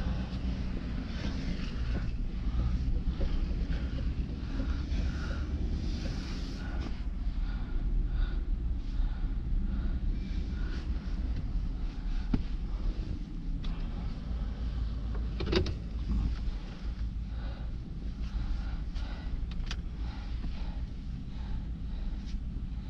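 Ford F-150 pickup truck's engine running as the truck pulls away slowly, heard from inside the cab as a steady low rumble, with a few light clicks and knocks from the cab.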